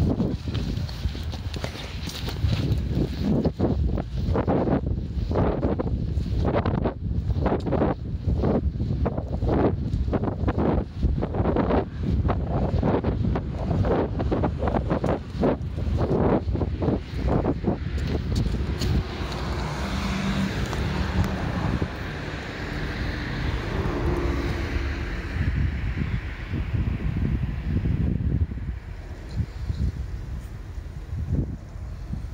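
Footsteps on paved stone, about two a second, with wind rumbling on the microphone. About two-thirds of the way through, the steps give way to a steadier broad rumble.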